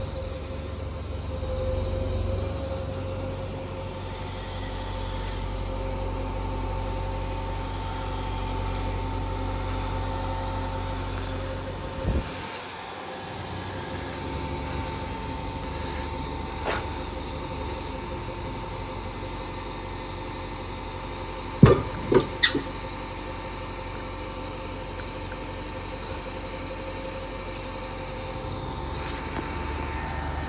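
Material handler's diesel engine running with a steady hydraulic whine as it carries a scrap magnet in its grapple. A couple of faint knocks come early on, and two sharp metal knocks come a little past two-thirds of the way through as the magnet is set down on the pavement.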